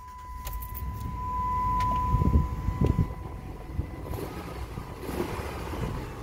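A 4.7-litre V8 in a pickup being started: the starter cranks and the engine catches about two seconds in, then settles into a steady idle. A steady high tone sounds until about the moment the engine fires.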